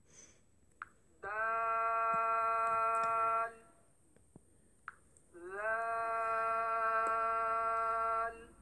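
A voice pronouncing Arabic letter names from the Madani Qaidah chart, each letter drawn out as a long held vowel, twice. Each begins with a short rising glide and then holds one steady pitch for about two seconds.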